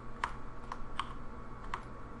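Four sharp, spaced-out clicks of computer keys, with a faint steady hum beneath.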